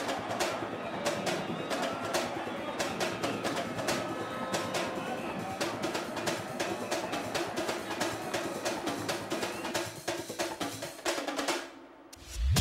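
Stadium crowd noise with supporters' drums beating fast, snare-like rolls and hits, fading out near the end.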